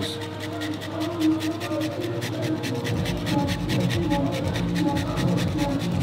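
A black truffle being rasped on a long stick grater over a plate of pasta, under background music with a quick, even ticking beat. A deep bass pulse comes in about halfway.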